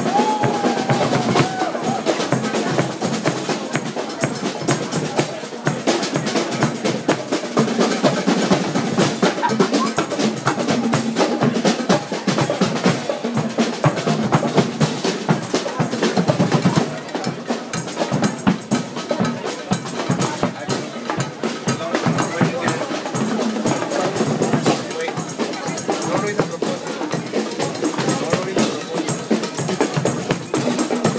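Live percussion music, mostly drums, played by an ensemble, heard through the voices of a large crowd.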